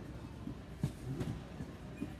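Supermarket background noise, a low steady murmur, with one sharp knock a little under a second in.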